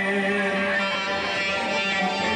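Live Greek folk band music: a long held note fades out about half a second in, and the string accompaniment, including a santouri, carries on without a pause.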